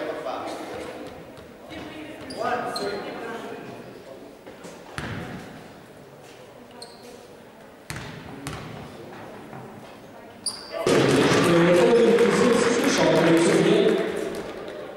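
A basketball bouncing a few times on a sports-hall floor, with scattered voices echoing in the hall. About eleven seconds in, a loud burst of cheering and shouting breaks out, greeting a made free throw.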